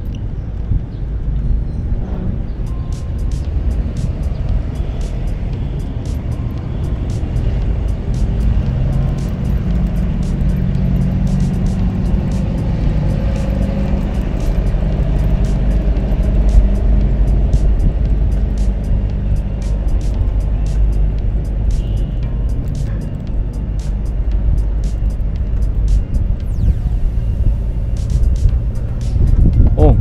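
Steady low rumble of city street traffic, with quiet background music over it and scattered light clicks.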